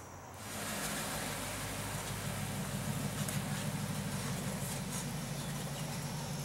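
A 1969 Camaro's GM LS V8 running at a steady, low rumble as the car rolls slowly away, starting about half a second in.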